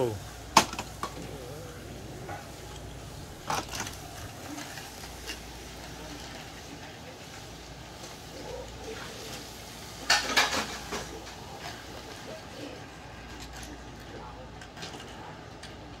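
Plastic toy train track pieces and toy engines clicking and clattering as they are handled: a sharp click about half a second in, a few more near three and a half seconds, and a louder burst of clatter about ten seconds in.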